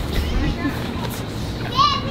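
People's voices and laughter over a steady low background hum, with a brief high-pitched laughing or whooping voice near the end.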